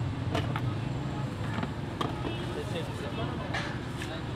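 Steady low rumble of road traffic with a few sharp clinks of steel serving utensils.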